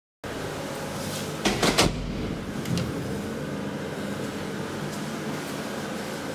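Steady hum of an elevator's machinery while the called car is on its way. A quick run of three clacks comes about one and a half seconds in, with a lighter knock a second later.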